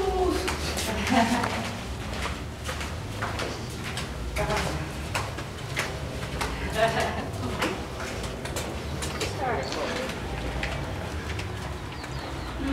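Footsteps on stone inside a fortress tunnel, mixed with brief, indistinct voices of people nearby.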